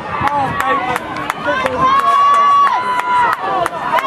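Spectators yelling encouragement at runners passing on the track, one voice holding a long high shout about halfway through, with sharp claps scattered among the shouts.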